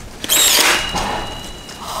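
Einhell nail gun firing once, driving a nail into a wooden frame joint: a sharp loud shot about a third of a second in, followed by a thin high tone that lingers for about a second.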